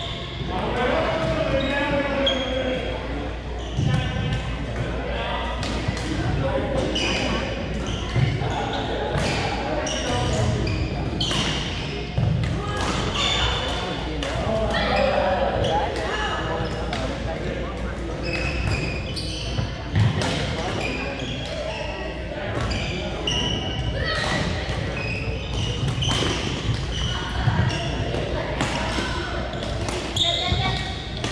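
Badminton rallies in a large, echoing gym: sharp racket strikes on the shuttlecock every second or two, short high shoe squeaks on the wooden floor, and a steady babble of players' voices from the neighbouring courts.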